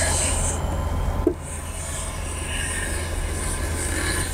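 Chalk in a large board compass scraping across a chalkboard as a circle is drawn: a steady high-pitched scratching in two strokes, with a light tap about a second in between them.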